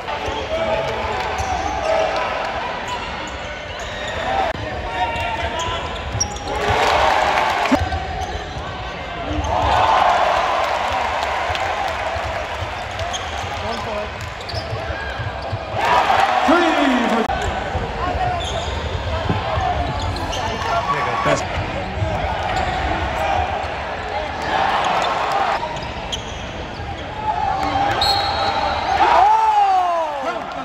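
Live college basketball game heard from the stands: a basketball bouncing on the hardwood court under a steady murmur of crowd voices. Several brief swells of crowd noise rise out of it, the loudest about halfway through and again near the end.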